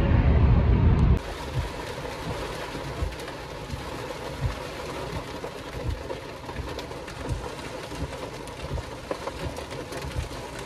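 About a second of car-stereo music over low road rumble, then an abrupt cut to steady rain on a parked car's roof and windows, heard from inside the cabin, with scattered heavier drops.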